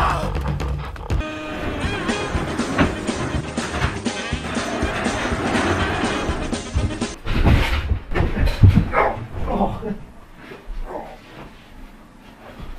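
Background music plays for the first several seconds. Then comes a run of thumps and scuffs, loudest about two-thirds of the way through, as people run across a room and tumble onto the floor.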